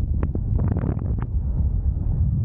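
Airflow buffeting the camera microphone in paraglider flight: a steady low rumble with scattered short crackles.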